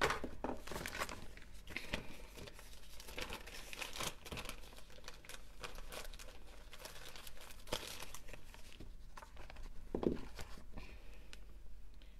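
Thin plastic crinkling and rustling in irregular crackles as a clear disposable plastic glove is worked onto the hands.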